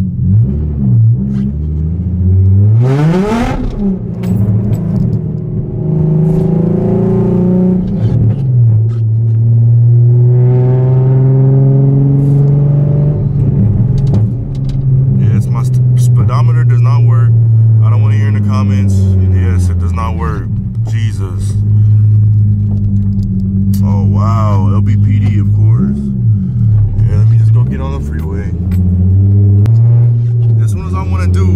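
Nissan 350Z's V6 engine heard from inside the cabin, revving up in rising pulls a few times and then running at a steady drone. It is loud because the exhaust ends open at the mid pipe, with the Tomei section removed.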